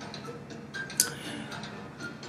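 A quiet pause with one short, sharp click about a second in, over faint room tone.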